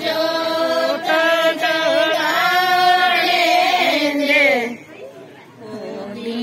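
A group of women singing a Hindi devotional song (bhajan) together in unison, with long held, gliding notes. The singing breaks off for a moment near the end.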